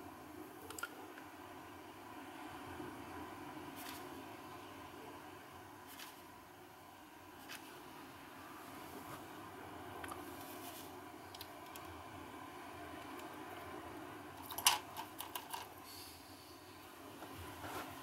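Quiet room tone with a few scattered light clicks, then a quick cluster of sharper clicks and taps about fifteen seconds in, from a paintbrush being picked up and handled.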